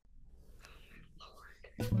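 A woman's faint breathy, whispery exhale over a low hum, then her voice coming in near the end with a drawn-out exclamation.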